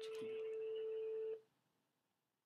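Telephone ringing tone heard over the line: one steady single-pitch tone that cuts off about one and a half seconds in, the call ringing through at the number just dialled.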